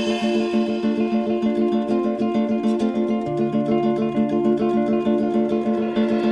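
Guitar playing the instrumental introduction of a song as a quick, even run of plucked notes; a lower bass note joins about three seconds in.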